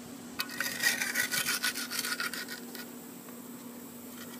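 Mason's pointing trowel scraping across the concrete-block top, clearing off excess concrete to leave it flat. A quick run of rasping strokes for about two seconds, then it tails off.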